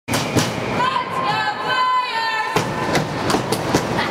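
Ice rink din during a hockey game: a long, high, held shout from the crowd about a second in, then a run of sharp knocks in the second half.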